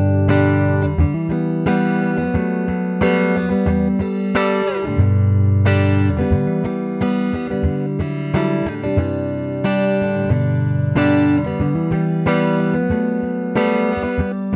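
PRS S2 semi-hollow electric guitar with flatwound strings, played clean through a Princeton amplifier: a continuous run of notes and chords, played so that the tone-capture pedal in the signal chain can learn the guitar's sound.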